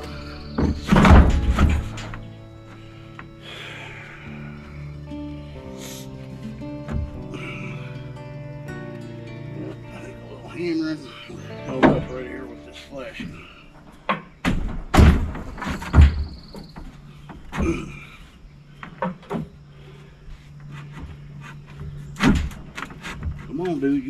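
Background music over scattered heavy wooden thunks as a framing board is knocked and set into place on a stud wall, the loudest about a second in.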